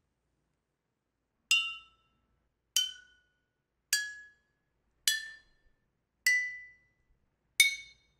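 Glass bottles struck one at a time with a small stick, six times at an even pace, each ringing a clear note higher than the last: a rising scale played on bottles.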